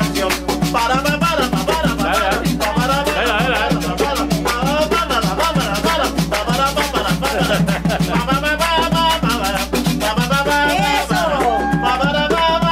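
Live band playing lively tropical Colombian dance music with a steady shaken-percussion rhythm, continuing without a break through an instrumental stretch.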